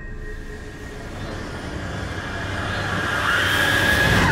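A rushing noise that swells steadily louder, with a faint steady tone running through it.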